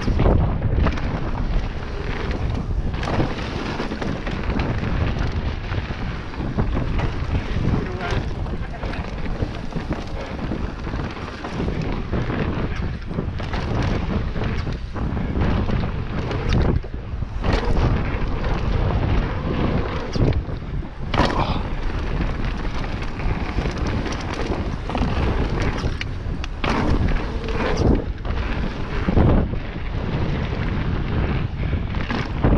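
A mountain bike riding fast down a dirt trail: steady wind noise on the camera's microphone and tyres rolling over dirt, with the clatter and knocks of the bike over bumps and jump landings scattered throughout.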